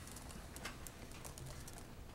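Faint, irregular clicks from a laptop keyboard being used, in an otherwise quiet room.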